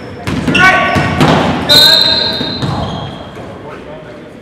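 Basketball game in a reverberant gym: spectators shouting and cheering in bursts, with a ball bouncing and a high held tone lasting about a second from halfway through.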